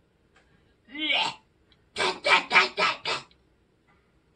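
A woman imitating retching with her voice, for a mouse vomiting up dirty water. There is one gagging sound about a second in, then a quick run of five harsh retches.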